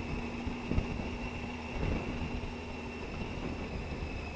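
Triumph Tiger 800 XRx's three-cylinder engine running steadily at low road speed, with wind and road noise, heard from on the moving motorcycle.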